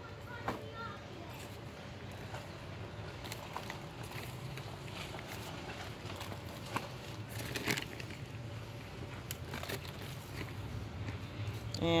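Dirt being poured into a laundry hamper lined with garden cloth: scattered soft rustles and patters of soil landing on the fabric, a little busier about two-thirds of the way in, over a steady low hum.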